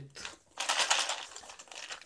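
Rustling and scraping of a zippered textile tool case being handled and turned over in the hands, starting about half a second in and lasting about a second and a half.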